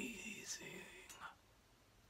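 A man whispering or speaking under his breath, faint and breathy, trailing off into near silence about a second and a half in.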